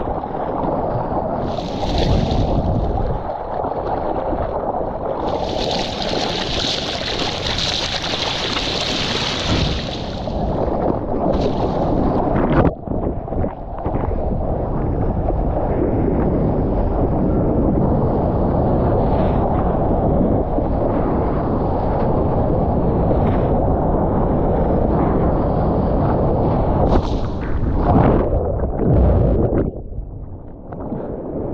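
Seawater rushing and splashing around a surfboard as it is paddled through the surf, with wind buffeting the camera's microphone. A hiss of spray comes about two seconds in and again for several seconds from about six seconds in, and the sound cuts out for a moment near the middle.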